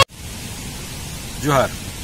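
A song cuts off abruptly at the start, leaving a steady hiss of background noise. About one and a half seconds in, a person makes one short voiced sound that falls in pitch.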